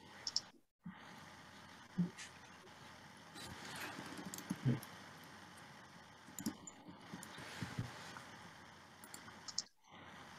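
Faint, scattered clicks and light knocks, about half a dozen spread over several seconds, over the low background hiss of a video-call line.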